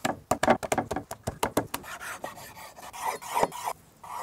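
Chef's knife slicing raw beef on a bamboo cutting board: a quick run of sharp taps of the blade against the wood in the first couple of seconds, then softer scraping and rubbing of the knife through the meat.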